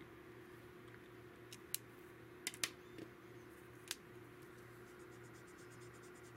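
Mostly quiet room with a faint steady hum, broken by a few light clicks and taps as pens and a marker are handled and set on the desk.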